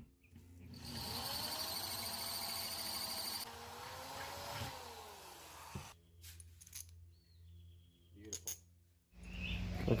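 Corded electric drill with a twist bit drilling through a metal plate. The motor whines up in pitch as it spins up and then cuts into the metal for about five seconds before stopping abruptly. A few light clicks follow.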